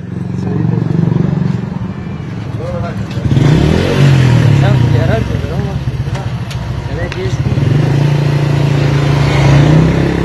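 A motorcycle engine running steadily close by, with people's voices over it.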